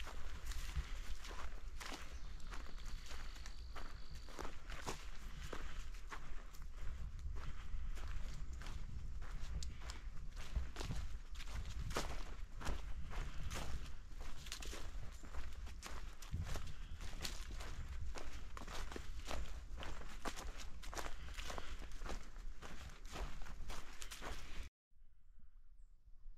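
Footsteps of a hiker walking steadily along a dirt forest trail covered in fallen leaves, a continual run of soft crunches and scuffs, over a steady low rumble.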